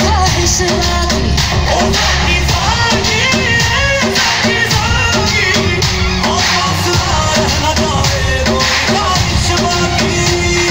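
Loud recorded Hindi pop dance song with singing over a steady beat.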